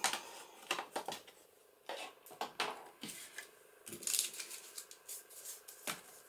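Small ink pad rubbed and dabbed along the edges of a paper card: a run of short scratchy rubs and light taps, with paper being handled.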